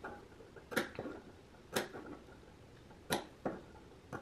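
Scissors snipping small notches into the seam allowance of an outer curve: three short, sharp snips about a second apart.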